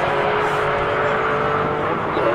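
Maserati MC12's V12 with a custom exhaust and a second supercar accelerating hard side by side. Their engines make a steady high note that slowly fades as the cars draw away.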